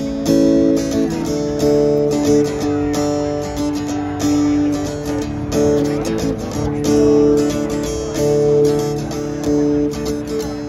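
Acoustic guitar strummed steadily through a PA system in an instrumental break between sung verses, with long held notes sounding over the strumming.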